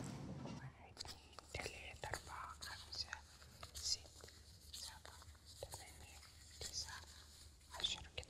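Quiet whispering with soft rustles and scattered light clicks as banknotes are counted by hand.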